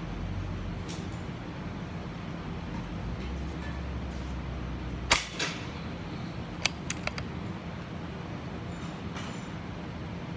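Steel tape measure being handled: one sharp snap about halfway through, a second softer one right after it, then a quick run of lighter clicks, over a steady low background rumble.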